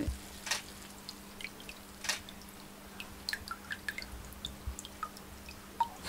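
Water dripping from an unglazed clay pot as it is lifted out of a basin where it has been soaked, small irregular drips falling back into the water. A faint steady hum lies underneath.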